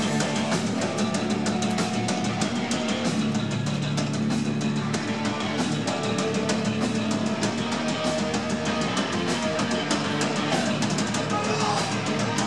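Hardcore punk band playing live: loud distorted electric guitar through Marshall amps over drums with rapid cymbal hits.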